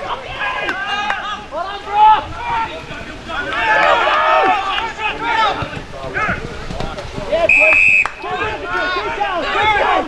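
Indistinct shouting from players and spectators at an Australian rules football match, voices overlapping throughout. A single short, high, steady whistle blast sounds about three-quarters of the way through.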